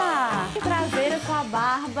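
Background music with a repeating bass line, with voices over it.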